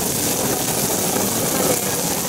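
Handheld gas torch burning with a steady rushing jet as it sears beef tongue skewers on a griddle.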